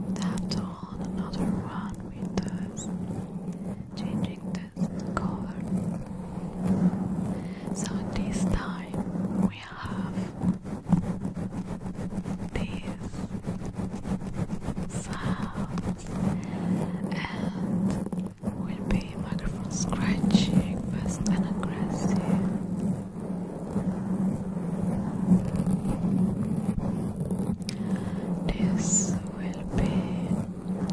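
Long fingernails scratching and rubbing fast over a sponge foam cover right on a microphone, a dense, continuous scratchy rustle with a deep pulsing rumble underneath.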